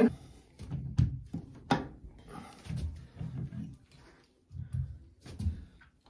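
A few sharp clicks and knocks, mostly in the first two seconds, as a plastic Delta shower-valve cartridge is handled and pushed against its brass valve body. Faint low handling sounds follow.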